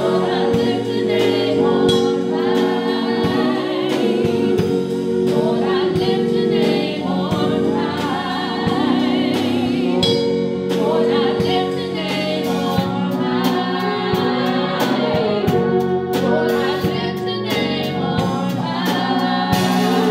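A small gospel praise team of men's and women's voices singing together over sustained instrumental chords and drums.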